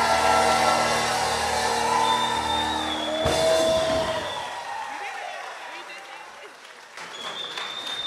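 A small gospel choir holds its final chord, which cuts off about three seconds in, followed by audience applause and cheering that dies down and picks up again near the end, with a long high whistle.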